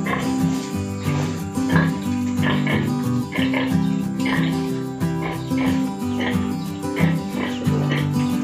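Background music with held low notes, over which piglets nursing at a sow squeal in short, repeated high bursts.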